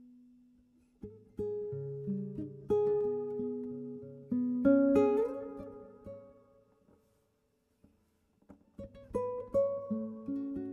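Solo classical guitar played fingerstyle: a held note dies away, then plucked notes and chords ring out and fade. A pause of about a second and a half follows before the playing resumes near the end.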